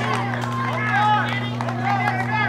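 Several people's voices calling out at once, indistinct, some high-pitched, over a steady low hum.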